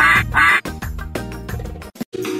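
Two quick duck quacks, the loudest sounds here, over upbeat children's song music. The music carries on and drops out briefly near the end.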